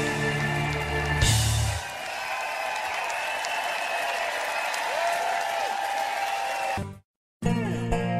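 Live rock band ending the song on a final loud chord about a second in, followed by the concert crowd cheering and applauding over ringing held notes. The sound cuts off abruptly near the end, and a short musical logo sting begins.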